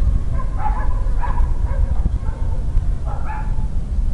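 A dog barking, a cluster of barks in the first second and a half and another about three seconds in, over a steady low rumble of wind on the microphone.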